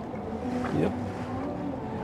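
Outdoor ambience on open water: steady wind and water noise under a low, steady hum, with a man briefly saying "yep" just under a second in.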